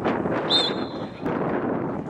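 Wind buffeting the microphone, with a short, shrill referee's whistle blast about half a second in, signalling the free kick to be taken.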